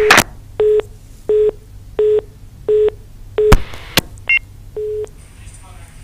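Telephone line tones as a phone-in call is put through: a row of short beeps of one steady pitch, roughly one every 0.7 seconds, with sharp clicks on the line near the start and about three and a half seconds in.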